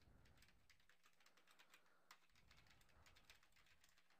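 Faint typing on a computer keyboard: quick, irregular key clicks as a web address is typed in.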